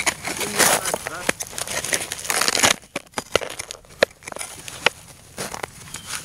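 Crunching and crackling of icy snow and handling noise as someone kneels beside a wooden target frame and moves it, with a few sharp knocks about halfway through.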